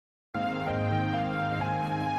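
Instrumental backing track of a slow ballad starting about a third of a second in with sustained chords, the notes shifting a couple of times; no singing yet.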